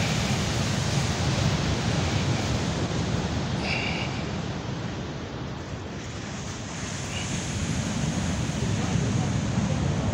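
Ocean surf washing onto a sandy beach, with wind rumbling on the microphone. The sound eases a little about halfway through and builds again toward the end.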